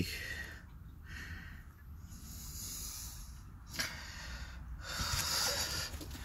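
A person breathing close to the microphone: a few breaths, each a soft hiss, with short pauses between them.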